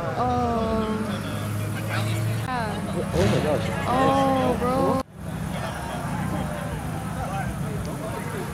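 Car engines idling with indistinct voices talking over them. The sound drops out abruptly about five seconds in, then engine hum and voices carry on a little quieter.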